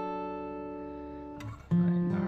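Background music played on acoustic guitar: a chord rings out and slowly fades, then a new chord is strummed near the end.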